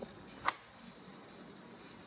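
ROEST sample coffee roaster with a faint steady background sound and one short, sharp click about half a second in, as green coffee beans are charged into its drum.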